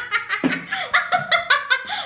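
A woman laughing hard in quick repeated bursts, with a short break about half a second in.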